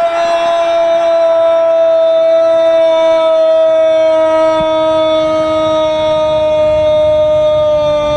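Football commentator's long, loud drawn-out "gooool" call for a goal, one vowel held at a steady pitch for about eight seconds.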